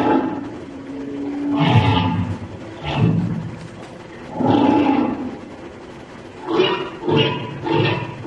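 Recorded humpback whale song played back: a series of separate moaning calls about a second apart, one of them a held low tone. Near the end the calls come closer together.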